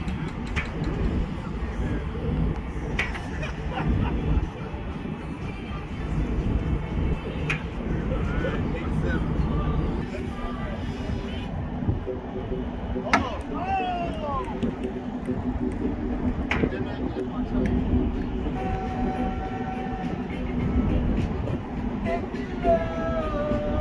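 Distant voices talking and calling out over a steady low rumble of wind on deck, with a few sharp knocks of bean bags landing on wooden cornhole boards.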